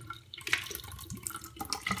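Carbonated soda poured from an aluminium can, splashing into a ceramic bathroom sink, with irregular splashes and ticks, one sharper about half a second in.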